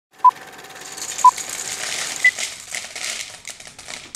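Three short electronic beeps about a second apart, the third higher in pitch, over a faint steady tone and a hiss that swells and breaks into rapid clicks.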